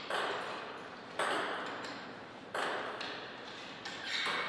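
A table tennis ball being bounced, with sharp knocks about every 1.3 seconds, each trailing off over about a second in the hall.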